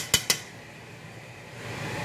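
A metal utensil clinks against the side of a stainless steel pot three times in quick succession, then the pot of corned beef boils with a steady low hiss.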